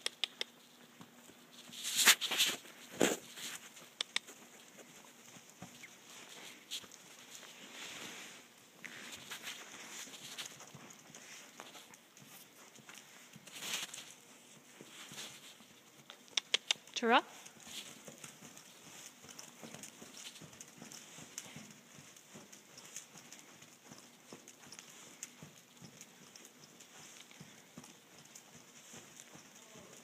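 A horse trotting on a lunge line, its hooves falling on sand arena footing, with a few sharper knocks scattered through.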